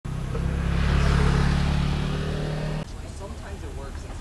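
A motor vehicle's engine running close by with a steady low hum, loudest about a second in, then cut off abruptly a little before three seconds, leaving faint street voices.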